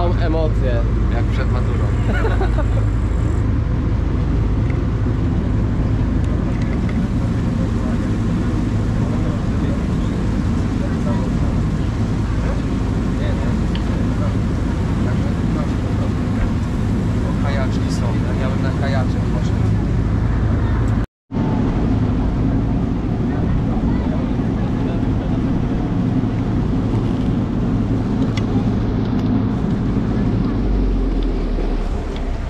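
Steady low drone of an excursion boat's engine heard on board, with faint voices in the background. The sound drops out completely for a moment about two-thirds of the way through.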